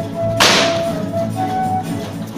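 A single sharp crack with a short hissing tail about half a second in, over background music with a held melody line.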